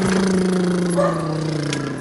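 A man humming one long note with his lips closed, sinking slowly in pitch until it breaks off.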